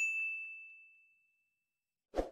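A single bright bell-notification ding sound effect, set off by a mouse click at the start, ringing out and fading over about a second.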